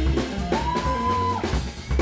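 Jazz guitar trio playing live: a semi-hollow electric guitar slides up into a high note about half a second in and holds it for about a second, over bass and a drum kit.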